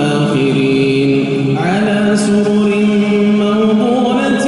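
A man's voice chanting Quran recitation in the melodic tajweed style, drawing out long held notes; the pitch steps up to a new sustained note about a second and a half in.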